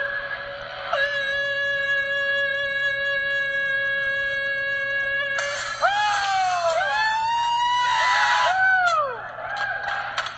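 A man's voice holding one loud, steady sung note, pitched to make a crystal wine glass resonate, with a short break about half a second in. About five seconds in it gives way to a sudden burst of noise and excited shouts and whoops that rise and fall in pitch.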